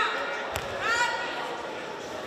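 A judoka hitting the tatami mat as she is thrown: one sharp thud about half a second in. A voice shouts from the hall just after it.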